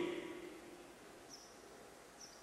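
A pause in amplified speech: the tail of the man's voice dies away in the first half second, leaving faint background noise with a couple of faint, short high-pitched chirps.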